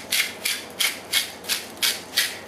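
Sea salt being dispensed over seeded cucumber halves: a regular run of short gritty rasps, about three a second.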